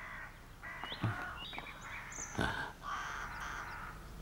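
A crow cawing: several harsh caws, each about half a second to a second long, with a couple of short sharp knocks in between.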